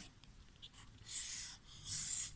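Felt-tip marker drawing on paper: two scratchy strokes, about a second in and again near the end, as a box is drawn around a line of writing.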